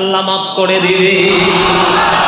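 A man chanting in a melodic, sung style through an amplified microphone, settling into one long held note about half a second in, with a noisy wash rising under it in the second half.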